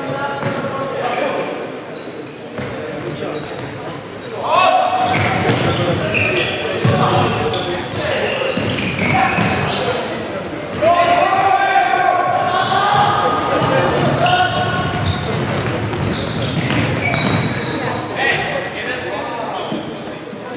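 Futsal being played in a large echoing sports hall: the ball thuds as it is kicked and bounces on the wooden court, while players shout and call to each other, loudest about four and a half seconds in and again from about eleven seconds in.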